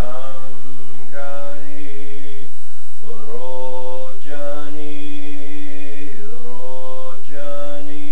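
A man chanting a Buddhist mantra aloud in a loud, near-monotone voice, holding each phrase for one to two seconds with short breaks for breath between.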